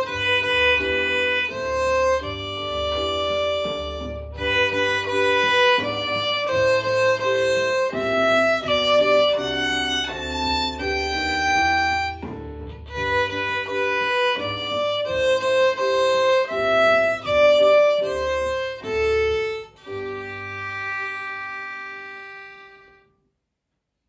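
Violin bowed through a melody in three time, one clear note after another, ending on a long held note that fades away near the end.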